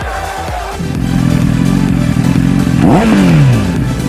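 Background music, then from about a second in a Royal Enfield motorcycle engine running steadily; near the end it is revved once, the pitch rising sharply and falling away.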